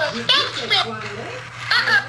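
Talking Elmo toy's high-pitched voice from its built-in speaker, in two short bursts: one at the start and another near the end.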